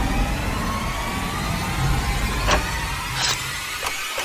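Dark cinematic theme music and sound design: a deep rumble under slowly rising tones, with a few sharp hits in the last second and a half.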